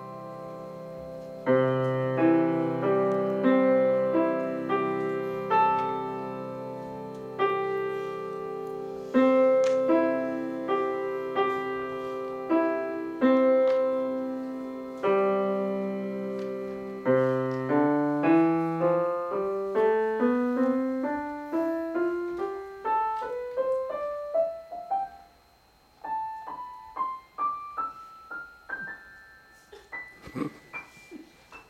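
Acoustic grand piano played solo: sustained chords struck every second or two, then a run of single notes climbing steadily up the keyboard. The run breaks for a moment about five seconds before the end, then carries on higher.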